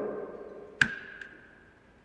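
The echo of a man's voice fading out, then a single sharp click about a second in with a short ringing tone after it, and a fainter click just after.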